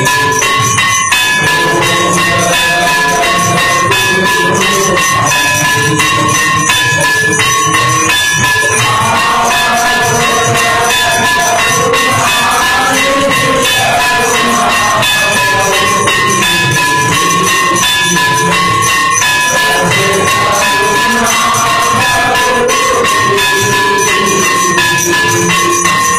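Temple aarti music: bells and percussion playing a fast, unbroken beat, with a ringing bell tone that repeats about once a second.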